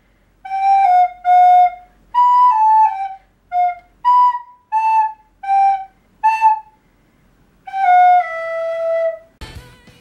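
Recorder blown through the nose, playing a melody of short separate notes. After a pause about seven seconds in comes one long held note that steps down in pitch, followed by a brief noise near the end.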